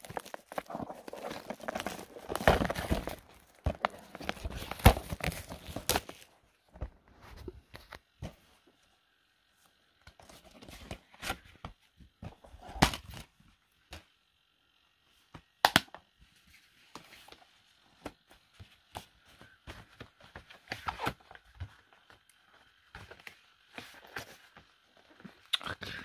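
Plastic Blu-ray cases being handled: a stretch of rustling and scraping for about six seconds, then scattered sharp clicks and taps of the case.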